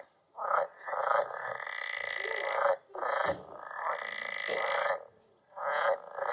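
Frog croaking, played back from a display screen's speaker: a short call, then long calls of about two seconds each with brief pauses between, its paired vocal sacs puffing out with each call.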